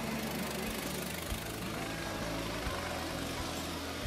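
Steady city street noise as a vintage electric tram runs past close by, with a low hum under the noise.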